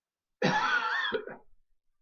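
A man coughs once, a rough cough about half a second in that lasts about a second.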